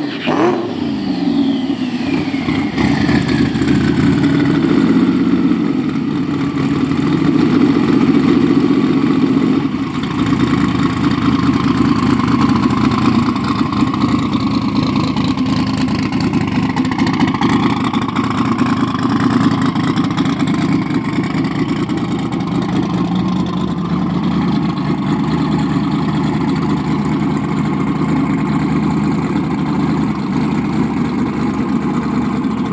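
A rusty drag-race pickup's engine idling steadily and loud, with a whine falling away in pitch over the first few seconds.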